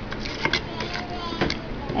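A spoon stirring sugar into mashed figs in a stainless steel pot, scraping through the thick mixture with a few sharp knocks against the pot, about half a second in and again about a second and a half in.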